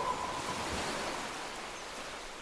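The last held note of the soundtrack music dies away in the first half second. It leaves a soft wash of hiss-like noise, surf-like in character, that slowly fades.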